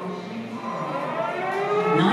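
Air-raid siren winding up, one long tone rising slowly in pitch, played as a recording over an exhibit's loudspeakers.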